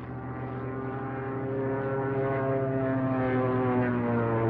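Piston-engined propeller aircraft droning steadily in flight, its pitch drifting slightly as it grows gradually louder.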